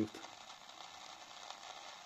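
Selga-404 portable transistor radio's loudspeaker giving a steady hiss with no station received: tuned to an empty spot, only noise comes through.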